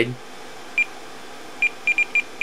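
YagTracker APRS terminal giving short, high single-pitch beeps as its rotary encoder knob is turned step by step through the stored stations: one beep about a second in, then a quicker run of beeps near the end.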